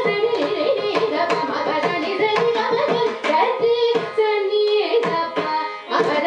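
Carnatic vocal music in raga Bhairavi: a woman singing with ornamented, gliding phrases, a violin following her line, and a mridangam playing quick strokes throughout.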